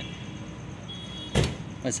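A single sharp knock about one and a half seconds in, as a tool or part is handled against the motorcycle's engine, over a steady low background hum.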